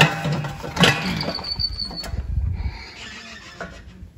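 A metal-mesh screen door being pushed open: two sharp knocks a little under a second apart, then a brief high squeal about a second in.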